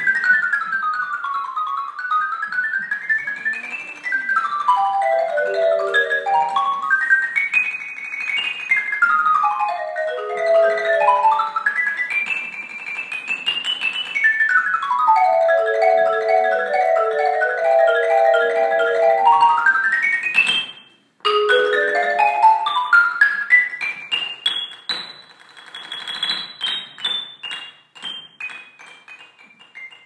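Mallet percussion ensemble playing fast scale runs that sweep up and down in waves, several parts moving together. There is a sudden break of under a second about two-thirds through, then the runs climb again. Near the end they thin out into separate, fading strokes.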